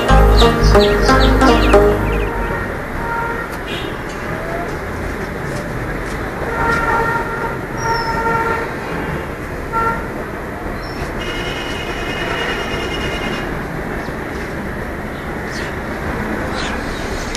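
Background music that stops about two seconds in, followed by a steady rushing background noise with a few short, faint high chirps.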